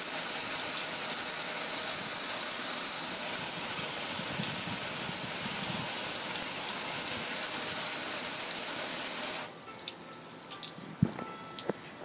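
Steady hiss of a high-pressure water jet from a spray wand hitting a gas grill, with water splashing. The spray cuts off suddenly about nine seconds in, leaving faint clicks and knocks.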